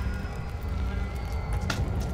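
Low, steady rumbling drone with faint sustained high tones above it, a tense film underscore, and one sharp crack about three-quarters of the way through.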